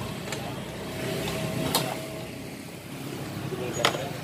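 A Suzuki Nex scooter's single-cylinder engine idling steadily, with two sharp clicks, the louder one near the end.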